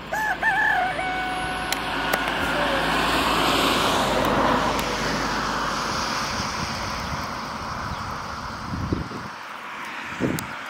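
A rooster crows once at the start, a warbling call of about two seconds ending on a held flat note. A broad rushing noise then swells and fades over the following few seconds.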